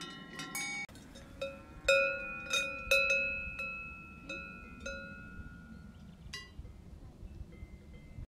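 Cowbells on grazing cows clanking irregularly, each strike ringing on and dying away. About a second in the sound changes to a different bell with lower tones, struck a few times and loudest near two and three seconds in.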